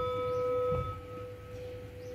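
Metal singing bowl ringing on after a strike from a padded mallet: one clear steady tone with a few higher overtones that die away about a second and a half in, leaving the main tone ringing.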